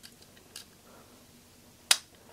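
Small white two-pin WAGO plug being pushed onto the power header of an analog breakout board. There are a couple of faint plastic ticks, then one sharp click near the end as the plug seats.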